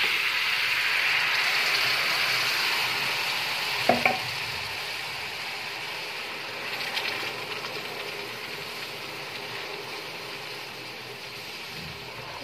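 Hot sugar syrup hitting gram flour roasted in ghee, sizzling and bubbling in the pan as it is stirred with a steel spoon. The sizzle is loudest at first and slowly dies down, with one clink of the spoon against the pan about four seconds in.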